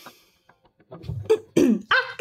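A woman's short breath, then throat clearing and a brief cough-like vocal sound starting about a second in. It ends in a loud voiced sound that falls in pitch.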